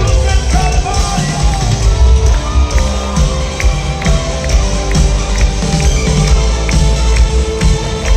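Live band playing a loud worship song through a concert sound system, heavy on bass with a steady drumbeat and a singing voice over it, heard from within the crowd in a large hall.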